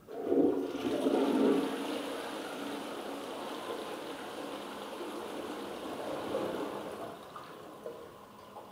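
A 2004 wall-mounted Armitage Shanks Melrose toilet flushing: water rushes in suddenly, loudest over the first second or so, then runs steadily as it swirls down the bowl, easing off near the end.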